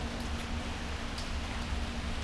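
Steady hiss of rain falling, with a low rumble and a faint steady hum underneath.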